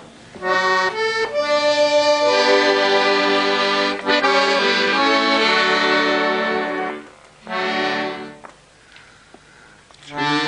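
Accordion playing the melody of a religious song in sustained chords. It dips briefly about seven seconds in, plays one more short phrase, and stops about a second and a half before the end.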